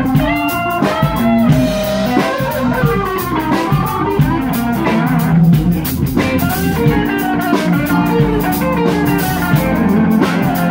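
Live blues band playing an instrumental passage: electric guitar lines with bending notes over bass, drum kit and keyboard.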